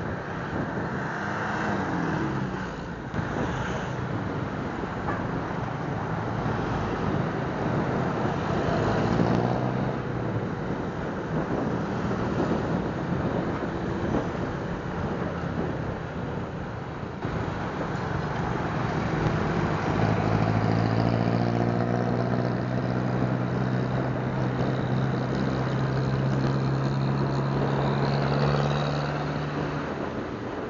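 Suzuki Smash underbone motorcycle's single-cylinder four-stroke engine running on the move, under steady wind and road noise. About two-thirds of the way through a steady engine note comes up clearly and holds until near the end.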